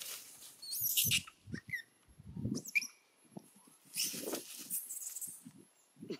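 Long-tailed macaques scuffling through dry leaves and earth, with several short, high, wavering squeaks. The rustling comes in bouts, the longest from about four seconds in.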